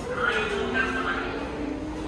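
Voices and chatter of people in a busy indoor public concourse, with one long tone that slides down in pitch and then rises slightly.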